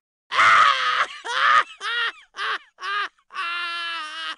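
A comic voice sound effect: a run of six loud cries falling in pitch, the last one held on one note.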